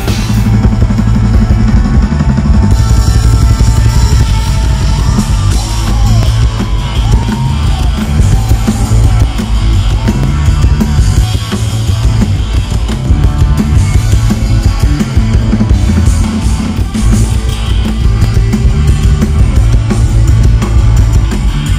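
Instrumental funk-rock band music, loud and steady: drum kit, electric bass and electric guitars, with a lead line whose notes bend up and down for several seconds.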